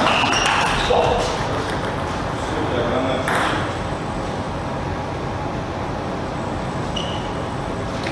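Table tennis ball clicking off bats and the table as a rally ends, with brief high squeaks of shoes on the court floor.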